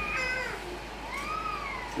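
Two high-pitched cries: a short falling one at the start and a longer one that rises and falls about a second in.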